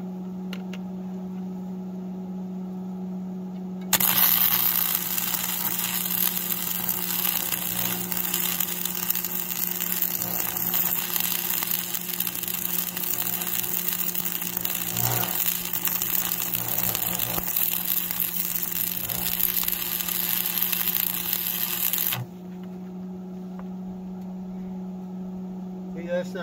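Stick-welding arc from a Lincoln AC-225 AC welder crackling steadily as a bead is run on the steel plow mounting bracket. It starts abruptly about four seconds in and cuts off suddenly about four seconds before the end, over a steady electrical hum.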